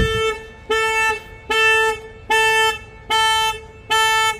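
Cupra Formentor's anti-theft alarm going off after the door is opened from the inside handle, sounding in short, steady-pitched blasts about every 0.8 s.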